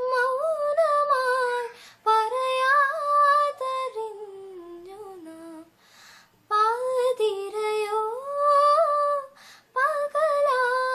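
A woman singing a Malayalam song solo and unaccompanied, in held, gliding phrases with short breaths between them. In the middle comes a quieter phrase that sinks lower in pitch.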